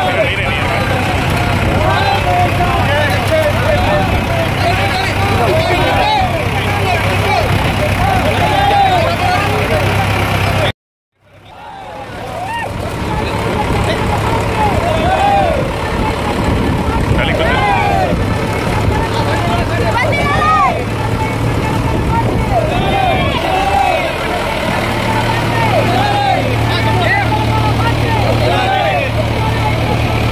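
Mahindra 575 DI XP Plus tractor's four-cylinder diesel engine running steadily, heavier for the last few seconds. Many crowd voices call out over it. The sound cuts out completely for about half a second partway through.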